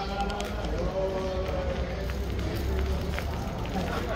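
Street ambience: people's voices talking nearby over a steady low rumble, with light clicks of footsteps as the walker moves along the street.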